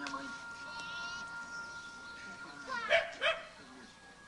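A dog barking twice in quick succession, about three seconds in, over a faint steady high-pitched whine.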